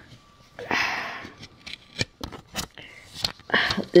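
Plastic CD jewel case being handled and opened: a brief rustle, then several sharp plastic clicks.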